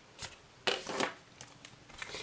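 Tarot cards and their cardboard box being handled: a brief scraping slide about two-thirds of a second in, with a few light taps and ticks around it.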